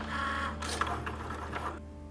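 Cricut Maker cutting machine running, its carriage motor whirring in several short runs as it drives the blade across a sticker sheet on the cutting mat; the sound stops shortly before the end.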